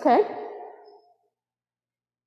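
A woman says a short "okay", its echo dying away within about a second, then dead silence.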